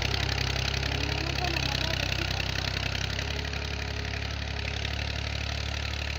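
Small farm tractor's engine running steadily as it pulls a tine ridging cultivator through soil, a low hum that grows slightly fainter as the tractor moves away.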